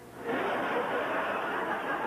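Live theatre audience applauding, starting about a quarter second in.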